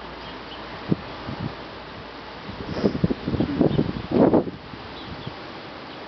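A black Labrador chewing and gnawing on a raw cow nose: a few short bites about a second in, then a run of wet chewing from about two and a half seconds, loudest just past four seconds, over a steady outdoor hiss.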